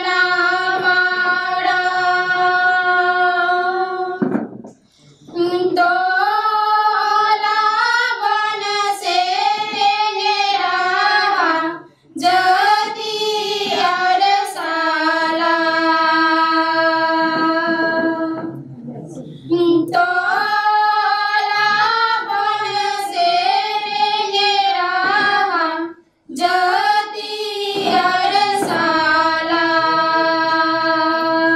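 A group of young women singing a song in unison into a microphone, without instruments. They sing in long phrases with held notes, breaking briefly for breath about every seven seconds.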